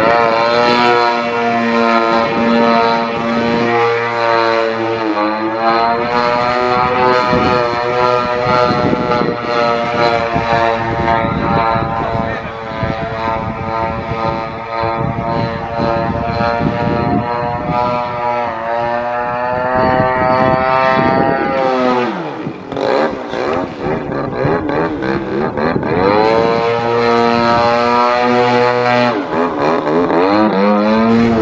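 Extreme Flight 85-inch Extra 300 EXP radio-controlled aerobatic plane flying, its motor and propeller running continuously. The pitch holds steady for long stretches and falls and rises again a few times: about five seconds in, in the middle, and near the end. It thins out briefly just before the last rise.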